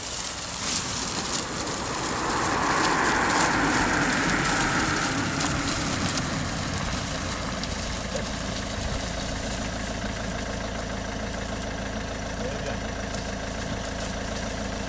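Vehicle engine idling with a steady low hum that settles into an even drone in the second half; a broad rushing noise swells and fades in the first few seconds.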